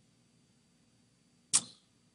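Faint room tone, then about one and a half seconds in a single short, sharp rush of breath from a person that fades quickly.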